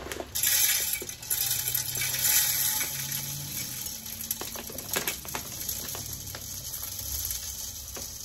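Wild bird seed pouring from a plastic bag into a tube bird feeder: a steady hissing patter of grains that starts about half a second in, with stray seeds ticking onto the stainless steel sink.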